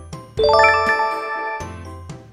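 A quick rising run of bright chime notes, about half a second in, ringing out for about a second over soft background music. It is a jingle sound effect marking the end of the quiz countdown.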